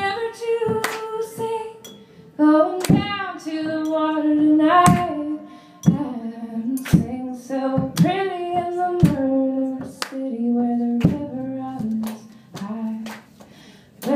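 A woman singing a wordless melody in long held and sliding notes to a strummed acoustic guitar, with sharp percussive hits about once a second.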